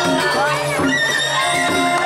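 Balinese gamelan playing, its metal keys and gongs ringing in sustained, overlapping tones, with high wavering glides over them throughout.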